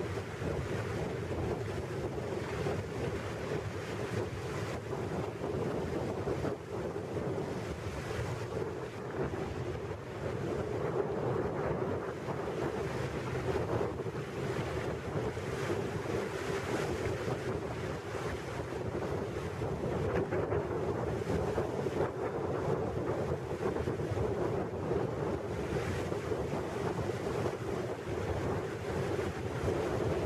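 A small boat under way: a steady motor drone with water rushing past the hull and wind buffeting the microphone, unchanging throughout.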